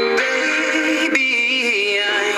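Music: a slow melody of held, slightly wavering voice-like notes that change pitch a few times, thin-sounding with no bass.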